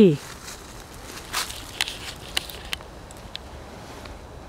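A few scattered light crackles and clicks spread over a couple of seconds, after the tail of a spoken word at the very start.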